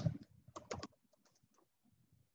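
Short burst of typing on a computer keyboard: a quick run of keystrokes within about the first second.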